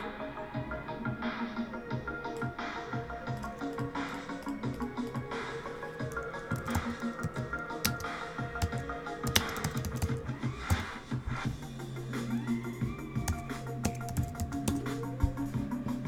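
A song playing at low level with a steady beat.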